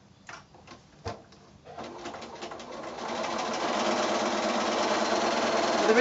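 Electric sewing machine stitching a seam through cotton patchwork: a couple of light clicks, then about two seconds in the motor starts, speeds up and runs steadily.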